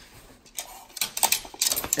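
A nylon windbreaker jacket slipping from the hand and falling to the floor: fabric rustling with a quick run of small clicks and clinks, likely from its metal zipper. The clicks start about half a second in and get busier toward the end.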